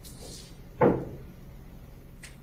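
A single short, loud thump about a second in, over a steady low hum.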